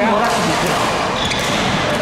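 Badminton rackets striking the shuttlecock in a doubles rally: a few short, sharp hits ringing in a large sports hall, with voices chattering.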